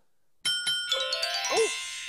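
A doorbell chime: about half a second in, a quick run of bell-like notes that ring on together, announcing a customer at the door. A short "ooh" from a man near the end.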